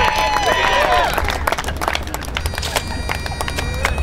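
Crowd cheering and clapping, with voices shouting in the first second. A steady bagpipe drone comes in about halfway through.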